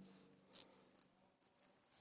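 Near silence: faint room tone with a few brief, soft high-pitched ticks of hiss.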